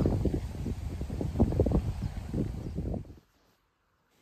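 Wind buffeting the microphone in irregular gusts, a low blustery rush with many small knocks, which cuts off abruptly about three seconds in.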